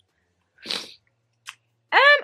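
A short breathy burst from a person's nose or mouth, like a sniff or sharp breath, followed by a faint click near the middle.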